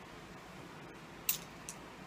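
Small makeup containers being handled: a sharp plastic click a little past the middle and a fainter one just after, over a steady low hiss of room noise.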